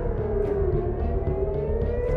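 Civil-defence air-raid siren wailing, its pitch sliding down and then rising again about one and a half seconds in, over a steady low rumble.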